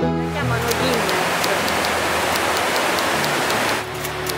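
Waterfall rushing: a steady, dense hiss of falling water, with background music fading out in the first second.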